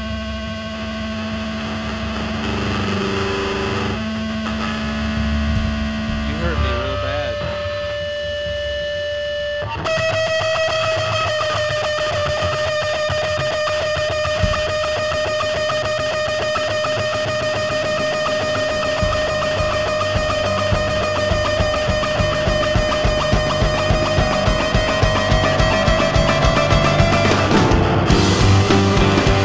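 Instrumental intro by a piano-bass-drums rock trio: long held notes through distortion and effects, with a few sliding pitches, then from about ten seconds one sustained note over a steady beat that grows louder toward the end.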